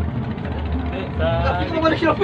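A small wooden boat's motor running steadily with a low drone. A voice comes in over it in the second half.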